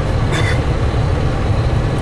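Steady low rumble of a GAZelle van with a Cummins diesel engine, heard from inside the cab.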